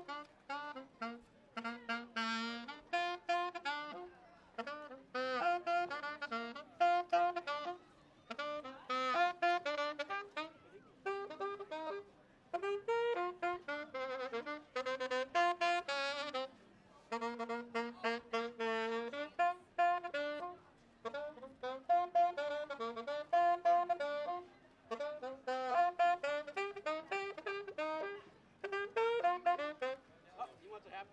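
Solo saxophone playing a melody, one note at a time in short phrases with brief pauses for breath between them.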